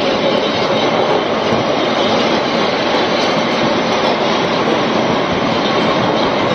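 Landslide: rock and debris tumbling down a mountainside, heard as a loud, steady rushing noise with no separate crashes standing out.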